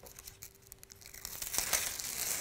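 Thin plastic film being peeled off a sheet of image-transfer paper, rustling faintly at first and getting louder in the second half.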